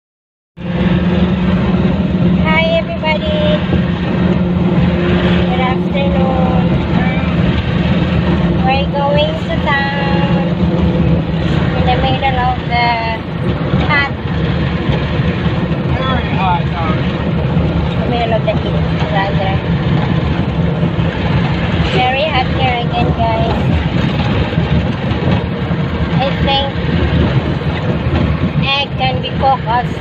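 Steady drone of a vehicle engine and road noise, with people talking indistinctly over it every few seconds.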